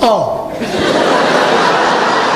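A congregation laughing together, a steady wash of many people's laughter with no single voice standing out, starting about half a second in after one voice slides down in pitch.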